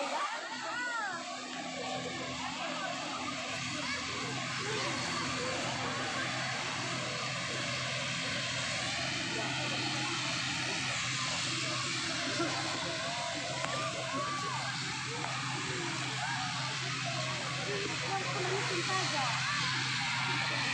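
Aircraft engines running steadily, a constant hum with a steady rushing noise, under the chatter of a crowd.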